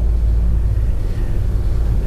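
Steady, deep low hum, fairly loud, in a studio broadcast's audio.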